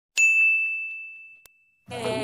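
A single bright electronic ding, a transition sound effect, struck once just after the start and fading away over about a second and a half.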